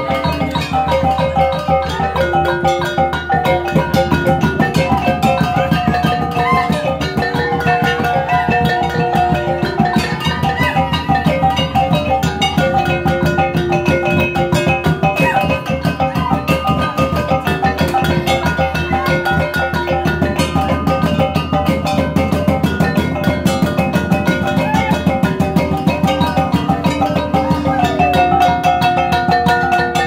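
Dance music played loudly: a repeating melody of short pitched notes over a steady, fast drum beat.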